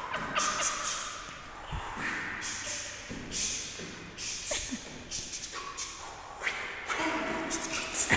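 Irregular footfalls, stamps and shoe scuffs on a wooden floor as a person dances.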